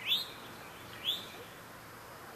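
A bird chirping twice, about a second apart; each chirp is a short, quick rising note.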